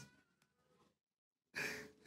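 Near silence, then about one and a half seconds in, a short audible breath or sigh picked up by a microphone.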